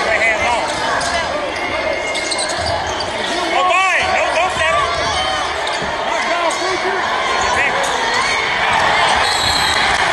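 Basketball game in a gymnasium: a basketball bouncing on the hardwood court and sneakers squeaking, over a steady hubbub of crowd voices. A cluster of sharp squeaks comes about four seconds in.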